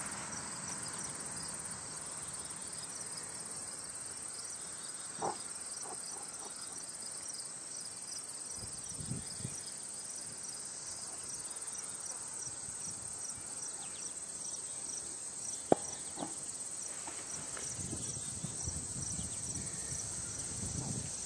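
Background insect chorus: a steady high-pitched trill with a regular pulsed chirp a few times a second, which pauses briefly partway through. A single sharp click comes about three-quarters of the way in, with a few soft low rustles.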